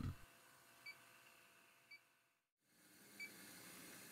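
Three short, faint electronic beeps from an INFICON D-TEK Stratus refrigerant leak detector, about a second apart, as its Sense Zero button is pressed to step through the pinpoint-mode sensitivity settings. Between the beeps there is only faint room tone, with a moment of total silence midway.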